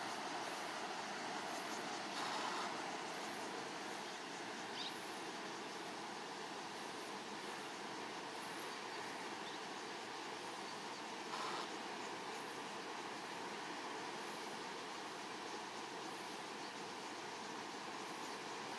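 Steady outdoor background noise with faint, high-pitched ticks repeating about once a second and two brief swells in the noise, the first a couple of seconds in and the second near the middle.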